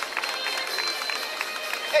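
Outdoor crowd noise: overlapping voices and chatter with music playing in the background, and a short shout right at the end.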